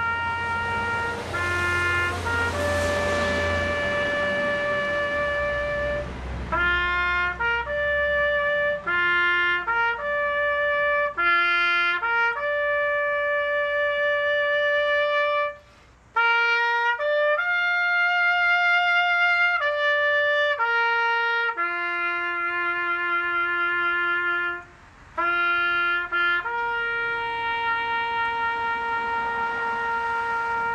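Solo trumpet playing a slow bugle call: long held notes on the few pitches of the bugle scale, with two short breaks, one near the middle and one about four-fifths of the way through.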